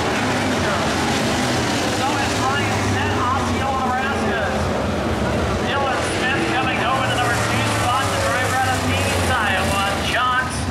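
Dirt-track modified race car engines running steadily, with people talking close by from about two seconds in.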